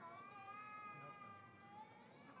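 A faint, high-pitched voice making drawn-out sounds that waver and bend in pitch.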